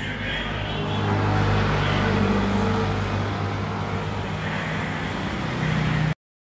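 A motor vehicle engine running steadily at low revs, getting a little louder about a second in.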